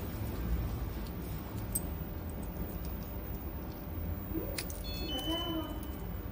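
A mains plug and cable being handled over a low steady hum. About four and a half seconds in there is a sharp click, followed by a brief high electronic beep that holds one tone to the end.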